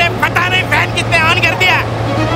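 A high-pitched voice in several short, wavering phrases over a steady low hum.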